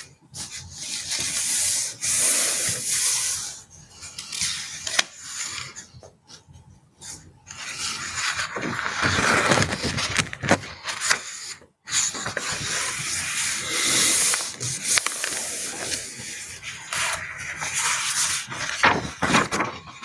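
Irregular rubbing and scraping noise coming through a video-call microphone, in noisy stretches with short breaks around four, seven and twelve seconds in.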